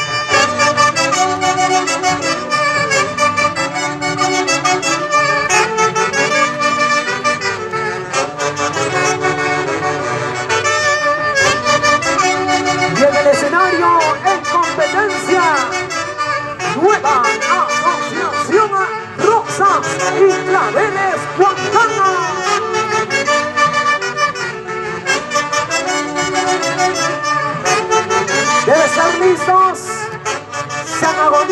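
Huaylarsh dance music played live by a folk orchestra led by saxophones: a brisk, repeating melody over a steady beat, with quick sliding high notes in the middle stretch.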